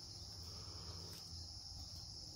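Faint, steady chirring of crickets: an even, high-pitched insect chorus with no breaks.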